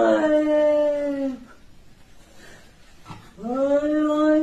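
Cat yowling: a long, steady, drawn-out call that ends about a second and a half in, then a second one starting near the end. It is the yowl of an agitated cat standing arched with its fur puffed up.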